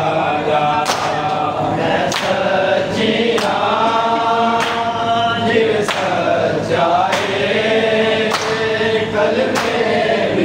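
A crowd of men chanting a noha (mourning lament) together, with a sharp slap of hands striking bare chests in unison (matam) about every second and a quarter, eight times.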